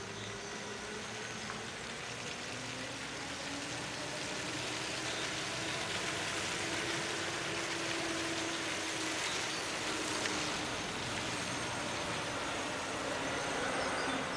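Volvo FE Hybrid refuse truck driving slowly past: tyre noise with a faint hum that rises a little in pitch, growing louder as the truck nears and passes.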